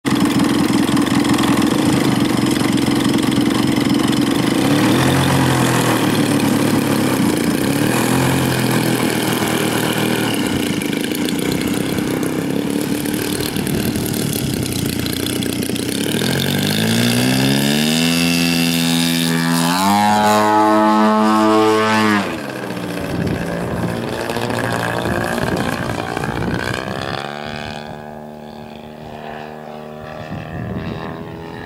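DLE 111 twin-cylinder two-stroke gas engine of a 1/3-scale clipped-wing Cub model airplane, running steadily at low throttle, then opened up with a rising pitch for the takeoff run. About two thirds of the way in the pitch drops suddenly and keeps falling as the sound fades while the plane climbs away.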